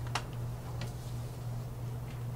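Two light clicks of small cosmetic bottles or boxes being handled and set down on a tabletop, the second under a second after the first, over a steady low electrical hum.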